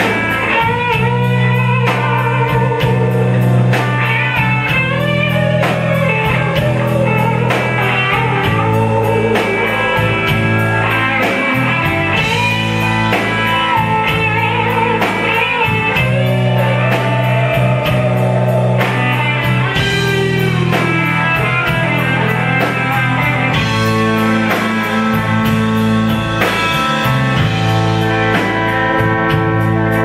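Live rock band playing: an electric guitar lead with bent, gliding notes over rhythm guitar, sustained bass and drums with a steady cymbal beat.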